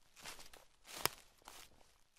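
Footsteps moving through grassy undergrowth, a few crunching steps roughly half a second apart, with one sharper crunch about a second in.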